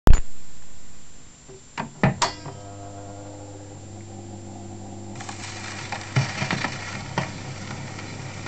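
A 78 rpm record player being set going: a loud knock, then a few clunks and a steady low hum as the turntable runs. About five seconds in the needle meets the shellac record and the lead-in groove's surface hiss and crackles begin.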